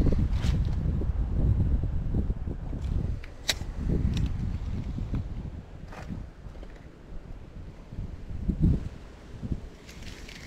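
Wind rumbling on the microphone, heaviest in the first half, while a spinning rod is cast and its lure reeled back. A few sharp clicks come from handling the spinning reel.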